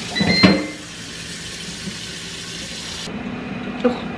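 Rinsing at a kitchen sink: a plastic container knocks against the sink with a brief squeak in the first second, then tap water runs in a steady hiss that stops abruptly about three seconds in.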